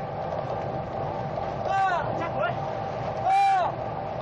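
Two short shouted calls, each rising then falling in pitch, the second louder, from a trainera crew racing at sea. Under them runs a steady engine hum from the boats on the water.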